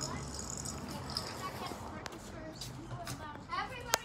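Quiet outdoor background with faint, distant children's voices, strongest shortly before the end. There is a single sharp click about halfway through.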